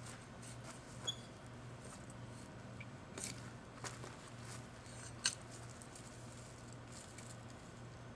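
A garden fork working soil: a few faint scrapes and short sharp clicks, the sharpest about a second in and about five seconds in, over a low steady hum.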